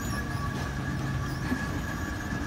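Escalator running: a steady mechanical hum with a thin, constant whine above it.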